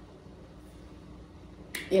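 Quiet room tone with a faint steady hum. Near the end comes a single sharp click, and a woman's voice starts right after it.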